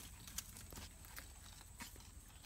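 Faint, scattered clicks and scuffs of beagle puppies' paws on concrete as they walk and play, about four light taps in two seconds, over a low rumble.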